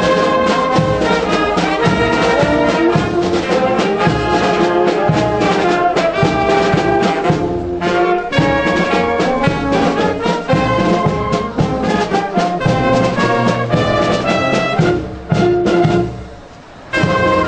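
Brass music, sustained trombone- and trumpet-like notes playing continuously, with a brief dip near the end.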